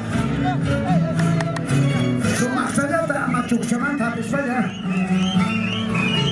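Live band music with guitars playing, with voices over it.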